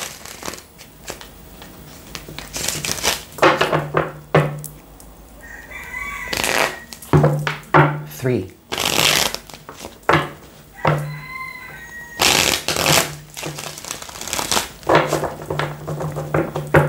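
A tarot deck being riffle-shuffled by hand and bridged back together, a run of short rattling bursts of cards every second or two.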